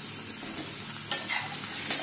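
Brinjal pieces frying in oil in an iron kadhai, with a steady sizzle. About a second in, a spatula starts stirring them, scraping against the pan with a couple of sharp strokes.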